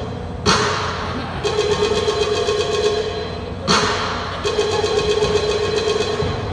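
Amplified show music or sound effects: a sudden crash about half a second in and again nearly four seconds in, each followed by a steady held tone.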